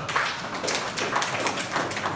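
Audience clapping: a dense, irregular run of sharp hand claps from many people.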